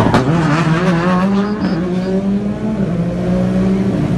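Rally car engine accelerating hard, its pitch climbing through the revs and then holding high and steady. A couple of sharp cracks come right at the start.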